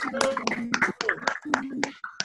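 Hands clapping in applause over a video call: quick, uneven claps several times a second, with a voice sounding over them.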